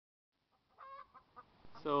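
A chicken clucking: one short pitched call, then a few soft clucks, before a man's voice starts near the end.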